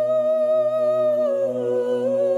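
Intro music: a voice humming one long note with a slight waver, which steps down to a lower note a little past halfway, over a steady low drone.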